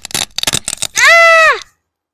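A quick run of rough scratching strokes, then a child's loud, high-pitched 'aaah' scream held for about half a second and falling in pitch as it ends. The scream acts out the frightened cry at the scraping noise in the story.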